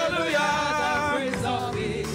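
Gospel worship singing led by a man on a handheld microphone through the PA, with other voices singing along in long held notes.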